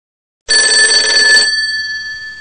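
A bell ringing loudly with a fast rattle, starting about half a second in; the rattle stops after about a second and the bell's tone rings on, fading.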